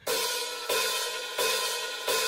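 Drum-kit cymbal or hi-hat struck in an even count, three times about two-thirds of a second apart, each strike ringing out: a drummer's count-in to a rock song.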